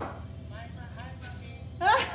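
Faint speech over a low steady room hum, then a woman's voice breaks in loudly near the end.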